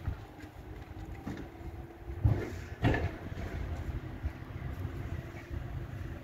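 Low steady hum of a distant electric locomotive running, under a rumble of wind on the microphone, with two sharp thumps about half a second apart a little before halfway.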